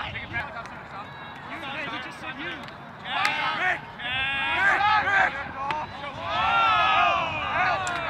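Lacrosse players and sideline shouting during play: many overlapping, high-pitched yells and calls, louder from about three seconds in, with a few sharp knocks among them.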